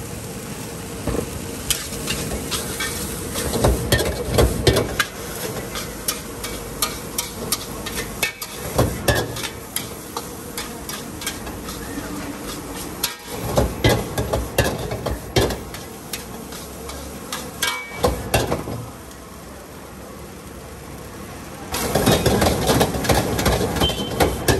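Steel ladle and spatula scraping and clanking against a large iron wok as rice is stir-fried over a gas flame, with sizzling underneath. The clanking comes in bursts of quick strikes, eases off for a few seconds near the end, then starts again.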